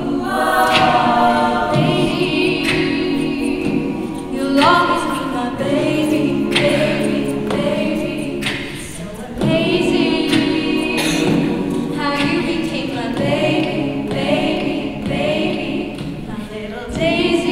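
Live a cappella group singing a pop song: a female lead vocal sung into a microphone over the group's stacked backing harmonies, with no instruments. The sound thins briefly about halfway through before the full group comes back in.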